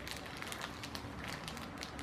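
Faint crinkling and squishing of a plastic drainable ostomy pouch squeezed by hand, thick oatmeal being pushed out of its open end into a bowl.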